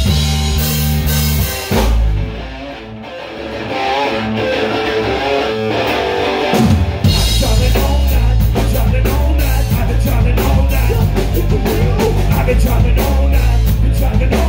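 Live rock band playing loud with electric guitar, bass guitar and drum kit. About two seconds in the bass and drums drop out, leaving a quieter passage. The full band comes crashing back in about seven seconds in.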